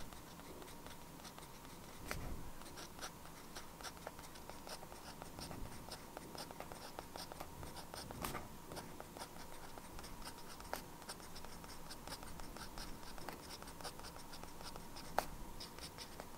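Fountain pen nib scratching across journal paper in continuous handwriting, a quick run of fine strokes with a few sharper ticks as the nib meets or leaves the page.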